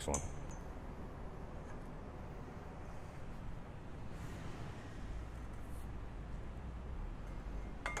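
Faint shop room tone with a few light metallic clinks as a long steel tube is lifted, turned end to end and set back into a tube bender's die. A low hum comes in for about two seconds past the middle.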